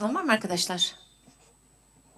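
A person speaking a short phrase that ends about a second in, followed by quiet room tone.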